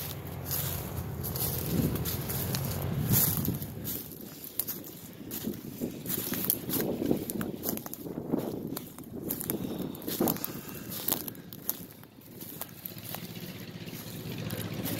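Footsteps through dry grass and brush, with uneven rustles and crackles as stems are trodden down. Under them runs a low rumble of wind on the microphone.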